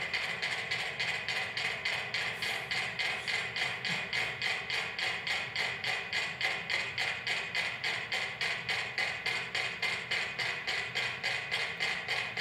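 Several mechanical metronomes ticking together in a fast, even beat of a few clicks a second. They are on a shared flexible platform and have fallen into sync with one another.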